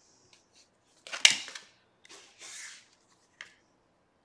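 Tarot cards handled on a tabletop: a sharp card snap about a second in, then brief sliding swishes as a card is laid down on the table, and a light tick near the end.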